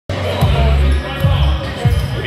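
A basketball being dribbled on a gym floor, about three bounces, with voices in the gym.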